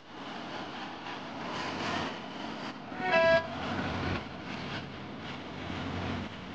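A single short horn toot, one pitched blast of under half a second about three seconds in, over a steady noisy outdoor street background.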